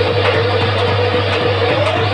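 Live folk music accompanying a dance, with regular drum strokes under a held, slowly wavering melody line, over a steady low hum.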